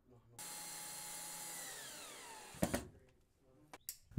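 Power drill driving a self-tapping screw into an ArmorCore woven-fiberglass ballistic panel: a steady motor whine that falls in pitch and stops about two and a half seconds in. A few sharp clicks follow.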